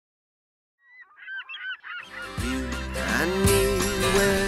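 Silence, then about a second in a brief flurry of quick, overlapping bird calls, cut off at the halfway point by intro music starting with a bass line and held notes.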